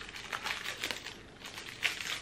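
Thin plastic wrapping crinkling and tearing in short, scattered crackles as it is pulled off a rolled item by hand, with one louder crackle near the end.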